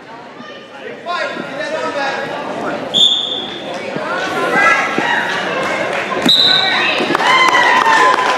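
Spectators shouting in a gymnasium during a wrestling match. A referee's whistle gives a short blast about three seconds in and another about six seconds in, the second with a sharp slap on the mat, the signal that the match has ended in a pin.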